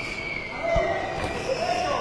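Voices calling out around a boxing ring, held shouts rather than commentary, with a single dull thud about three quarters of a second in as the boxers exchange punches.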